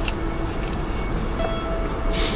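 Soft background music with long held notes over a low, even rumble.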